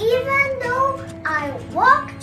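A child's voice reciting, its pitch rising sharply near the end, over soft background music with steady held notes.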